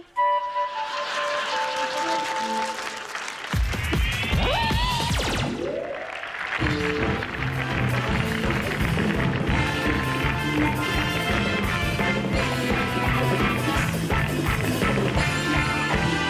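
Studio audience applauding, followed about four seconds in by a quick rising sweep of tones. From about six and a half seconds in, music with a steady beat and a repeating bass line plays.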